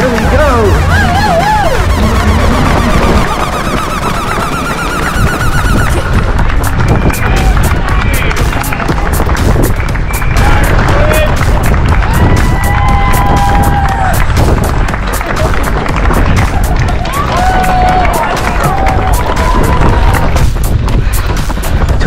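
Background music over race-course sound: a constant deep rumble, voices calling out now and then, and from about six seconds in, a steady patter of about three strides a second from a runner carrying the camera.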